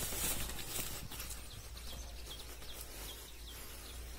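Outdoor ambience with wind buffeting the phone's microphone as a steady low rumble and hiss, and a run of faint short high chirps, several a second, through the middle.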